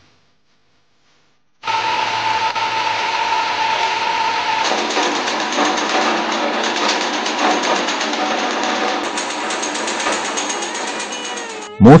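Pharmacy machinery working dried herbal powder, running with a steady, fast mechanical whirr. It starts abruptly about a second and a half in, after silence, and a high tone in it drops out about five seconds in.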